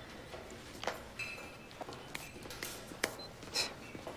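A few faint, scattered clicks and light clinks of a metal spoon against a ceramic bowl, one or two of them ringing briefly.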